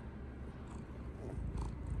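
A domestic cat purring close to the microphone, a steady low rumble that grows louder near the end as she presses up against it, with a few light rustles. It is the purr of a cat seeking affection at bedtime.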